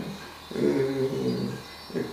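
A man's low, drawn-out voice sound without words, lasting about a second.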